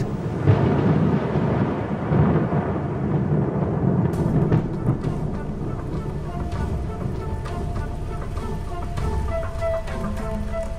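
Thunder rumbling over steady rain, heaviest in the first half; from about the middle, soft held music notes come in over the rain.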